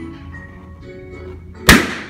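A party balloon pricked with a sharp point pops once with a loud bang near the end, over background music.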